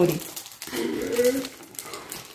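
A short, steady hum from a voice, under light rustling of wrapping paper on a gift box.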